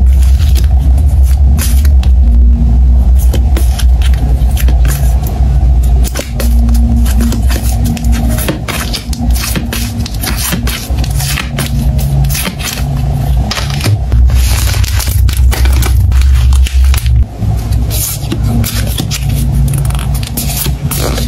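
Glossy photocards being shuffled and slid against each other in the hands, with many short crisp scrapes and clicks of card on card, over background music with a deep bass.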